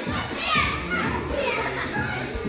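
A group of girls' voices shouting and singing along over music in a large room.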